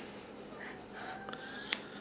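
Scissors cutting into a thick ponytail just above the hair tie: quiet snips through the hair, with one sharp blade click about three-quarters of the way through. The hair is so thick that it is hard to cut through.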